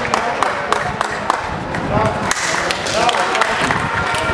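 A few people clapping by hand in irregular claps, mixed with excited voices calling out and cheering.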